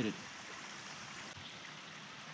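Small stream running, a faint steady rush of water with no other events.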